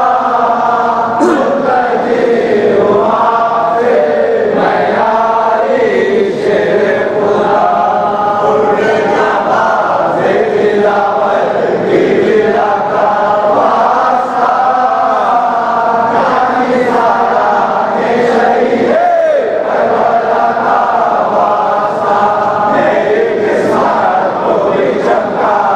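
A congregation of men chanting a munajat, a devotional supplication, together in long held and gliding lines.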